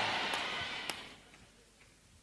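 Faint, even noise of a large hall that fades away about a second in and drops out to silence, with one small click just before it goes.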